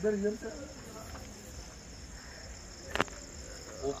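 Crickets chirping steadily and faintly in the background, with a brief voice at the very start and a single sharp click about three seconds in.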